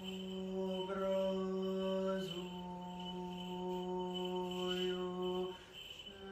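Orthodox liturgical chant: a single voice intoning long held notes, stepping to a new pitch about a second in and again just past two seconds, and breaking off shortly before the end.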